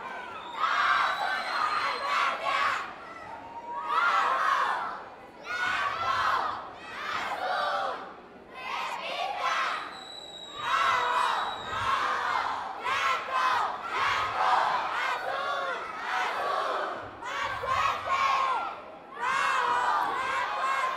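Junior cheerleading squad shouting a cheer in unison, in loud repeated bursts about every one to two seconds.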